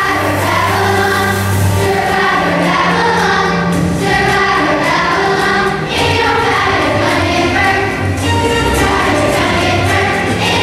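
Children's choir singing together with instrumental accompaniment that carries sustained low bass notes.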